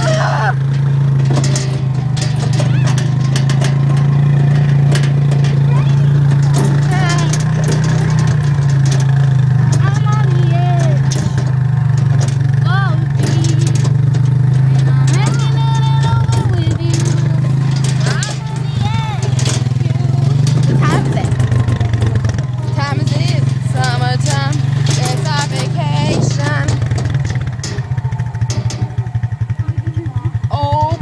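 ATV engine running steadily as it tows a small trailer of passengers, a constant low drone. Near the end the drone turns into a rapid, even chugging.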